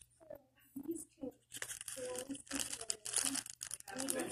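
Low voices, then close rustling and crackling from about a second and a half in, with voices mixed in.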